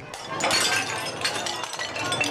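Clay rice pots being smashed open: a dense clatter of breaking crockery with many sharp clinks of shards.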